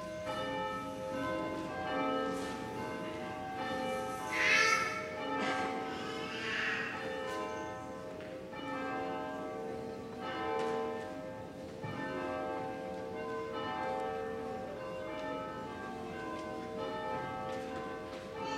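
Church bells ringing in a continuous peal of many overlapping, slowly decaying strikes at several pitches.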